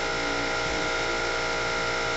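Steady mechanical hum with a high-pitched whine, unchanging in pitch and level.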